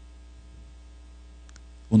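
Steady low electrical hum in the background, with two faint clicks about a second and a half in.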